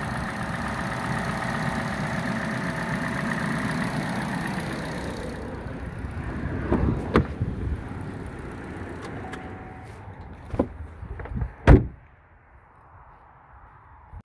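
Chevrolet Cruze four-cylinder engine idling steadily, running again after a faulty coil pack was fixed. Its sound fades after about six seconds, with a few knocks and a loud thump near the end, after which the engine sound drops away sharply.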